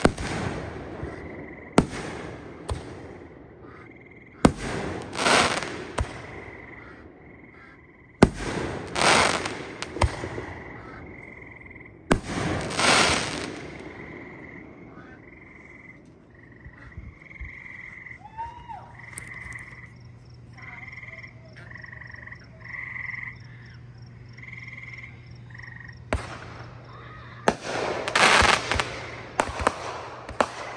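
Aerial fireworks going off in volleys: sharp bangs, each followed by a couple of seconds of crackling, several in the first half and a fresh run of bangs and crackle near the end. In the lull between, a high-pitched animal call repeats steadily, and a low steady hum sets in about halfway.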